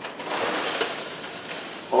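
Crinkly rustling of a cereal box and its plastic bag as cereal is shaken out into a blender jar, a steady rustle starting just after the beginning.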